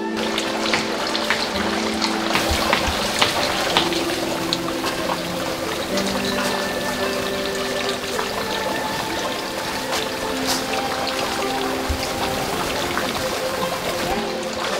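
Water splashing and trickling as it is poured from bamboo ladles over hands onto stones at a shrine purification basin, with a steady patter of small splashes. Acoustic guitar background music plays underneath.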